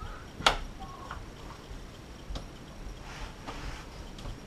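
SharkBite push-to-connect fitting being worked off PEX pipe by hand: one sharp click about half a second in, then a few fainter clicks and taps.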